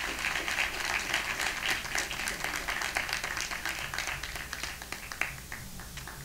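Audience applauding: many hands clapping at once, thinning out and fading near the end.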